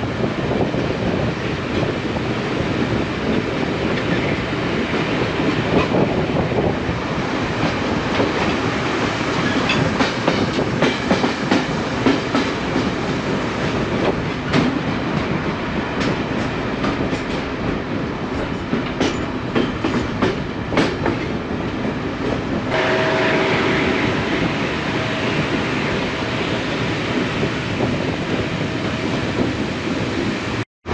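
El Chepe (Chihuahua–Pacífico) passenger train running through the canyon, heard from an open carriage window: a steady rumble and rush of wheels on rail, with many sharp irregular clicks over the track through the middle. Near the end the sound changes, with a couple of faint steady tones over the rumble.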